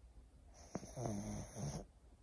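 A small dog lying on a sofa, faintly snoring: two short snoring breaths in the second half.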